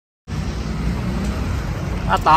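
Steady rumbling road-traffic noise, starting abruptly a moment in after a brief dead-silent gap.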